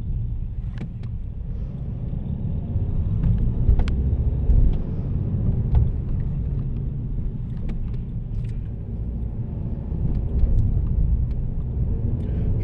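Low, steady road and engine rumble of a car driving, heard from inside the cabin, with a few faint clicks.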